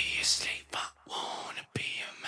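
Quiet whispered vocal from a song track, in short breathy phrases with brief gaps between them, with a few faint clicks and little or no instrumental backing.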